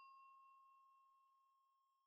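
Near silence, with only the faint fading ring of a chime-like ding sound effect.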